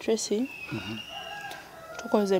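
A rooster crowing in the background: one long, drawn-out call starting about half a second in and fading near the end.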